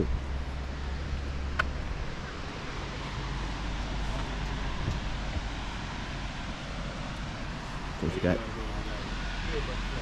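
An engine running steadily as a low hum, with a single sharp click about one and a half seconds in.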